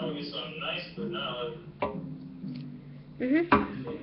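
A voice talking quietly, then a rising "mm-hmm" near the end, with a sharp click a little under two seconds in and another near the end.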